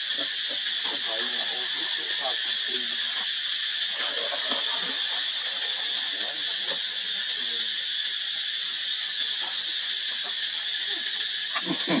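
A steady high-pitched drone that does not change, with faint voices underneath.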